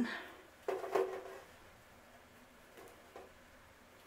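Soft handling sounds of tulle strips being looped onto an elastic hair tie clipped to a clipboard, with a couple of short rustles or knocks about a second in and a few faint ones later.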